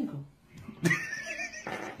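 A short, high-pitched wavering cry about a second in, lasting under a second.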